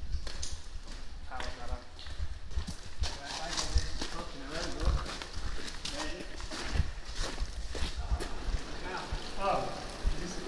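Footsteps crunching on the gravel floor and splashing through shallow puddles of a brick railway tunnel, irregular steps with a low rumble, and indistinct voices now and then.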